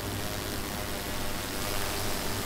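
Steady background room noise: an even hiss over a low, constant hum, with no distinct events.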